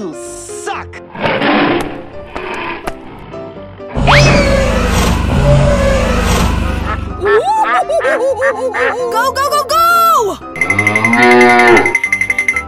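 Cartoon sound effects over background music: a loud animated dinosaur roar lasting about three seconds from around four seconds in, then high-pitched cartoon character voice noises.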